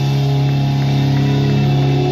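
Live rock band's amplified electric guitar and bass guitar holding a steady, sustained chord that drones on without a drumbeat.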